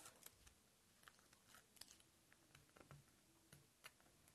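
Near silence with faint, scattered small clicks and rustles of double-stick tape and paper being handled.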